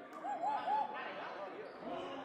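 Gym crowd noise with scattered voices while a basketball is bounced on the hardwood court during a free throw.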